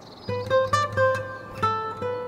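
Background music: an acoustic guitar picking a run of single notes that ring and fade, starting about a quarter second in.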